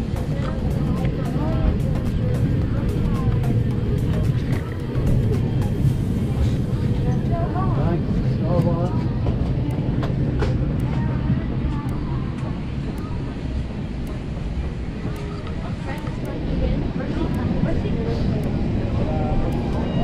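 Airliner cabin ambience as passengers disembark: a steady low rumble of the parked aircraft's air system under the murmur of passengers' voices, with scattered clicks and knocks of bags and footsteps.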